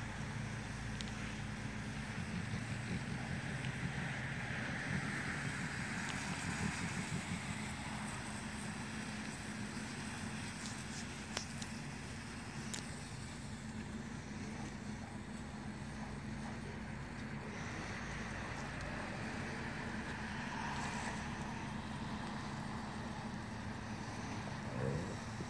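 Steady hiss of a garden sprinkler spraying water, over a steady low hum.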